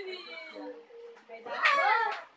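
Soft voices, then about one and a half seconds in a loud, high-pitched wavering vocal call lasting about half a second.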